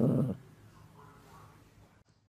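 A pet animal's short vocal sound lasting about a third of a second, followed by faint background noise.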